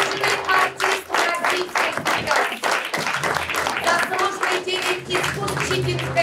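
Applause: many people clapping steadily and densely, with voices mixed in underneath.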